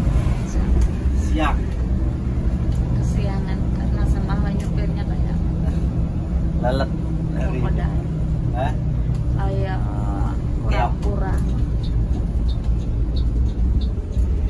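Bus engine running under way, heard from inside the driver's cab as a steady low drone, its note changing after about eight seconds. Short bits of talk come over it.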